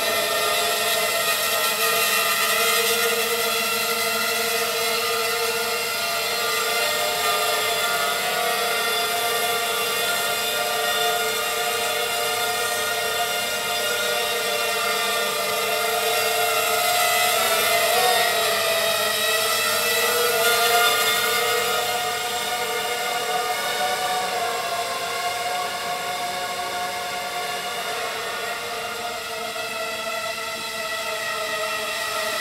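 Racing quadcopter's four Emax MT2204 2300 kV brushless motors spinning Gemfan 5×3 three-blade props, giving a steady whine made of several tones. The pitch wavers up and down past the middle as the throttle changes, then settles.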